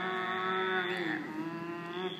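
Two women's voices holding one long, drawn-out, wordless vocal noise together while pulling faces; the pitch stays level, dipping slightly a little past halfway.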